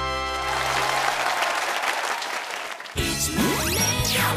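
A band's final held chord rings out and fades in the first second as a studio audience applauds; the clapping continues until, about three seconds in, new music with rising sweeps starts abruptly.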